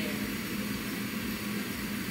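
Kitchen range hood exhaust fan running, a steady whirring noise with a low hum under it.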